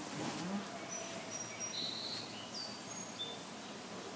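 Faint outdoor background with birds chirping: a scattered handful of short, high whistled notes at varying pitches, one gliding slightly downward, mostly in the middle of the stretch.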